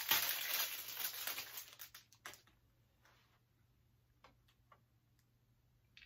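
Wrapping crinkling and rustling, fading out after about two seconds, then a few faint separate clicks of a small part being handled and fitted onto the top of a light stand.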